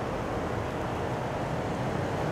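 Steady street noise from traffic on a city avenue, an even rush without distinct events.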